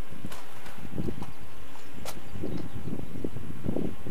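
Wind buffeting the microphone, a rough low rumble, with a few faint clicks of handling noise.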